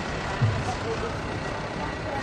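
Steady rumbling noise of the procession float moving along, with a low thump about half a second in and voices in the background.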